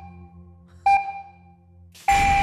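Electronic game-show countdown beep, a single short tone that rings and fades, sounding about a second in, over a low steady drone.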